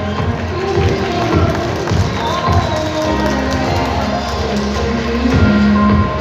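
Recorded pop music playing over a sound system, with sustained notes and melody lines.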